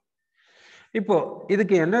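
A man's lecturing voice resuming after a short pause, preceded about half a second in by a brief, faint intake of breath.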